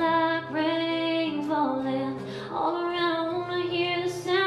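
A woman singing held, sliding notes without clear words over acoustic guitar accompaniment.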